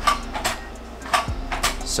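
A handful of light clicks and taps from the Sunrise Medical adaptive stroller's seat adjustment mechanism as its locking rod is handled and seated.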